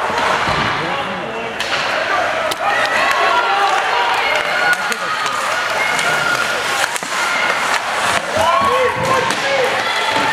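Ice hockey game in play: indistinct shouting voices, with sharp clacks of sticks and puck and knocks against the boards a few times.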